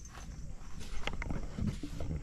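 A few short clicks and knocks about a second in, from a hand tool being handled, with footsteps on gravel.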